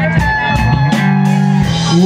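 Live rock band playing an instrumental bar between sung lines: electric guitars and bass holding chords over regular drum and cymbal hits.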